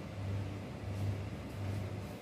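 Low hum of a refrigerator compressor, swelling and fading about twice a second, with a faint click about a second in.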